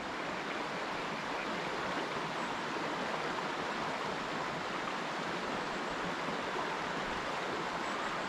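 A small creek flowing over a shallow riffle: a steady rush of running water.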